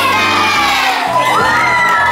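A group of children shouting and cheering together, with long held yells.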